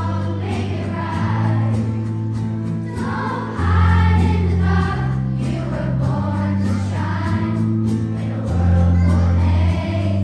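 A fifth-grade children's choir singing over an accompaniment of long, held bass notes that change every second or so.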